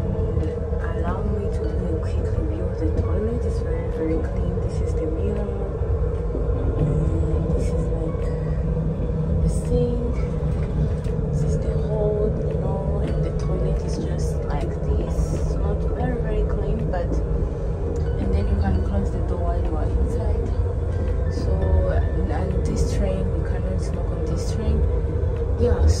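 Steady low rumble of a high-speed train running, heard from inside its small toilet compartment, with background music over it.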